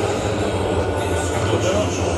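Ice rink ambience: a steady low rumble and hiss with faint voices over it.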